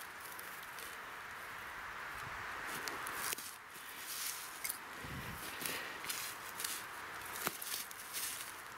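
Rustling and crackling in dry grass and fallen pine needles on the forest floor, with a few sharp clicks and a soft thump about five seconds in.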